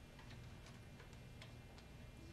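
Computer keyboard keys pressed one at a time as a word is typed: faint, slow, unevenly spaced clicks.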